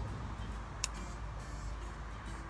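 A single short, sharp click about a second in as a tomato plant's leaf stem is cut during pruning, over a steady low background rumble.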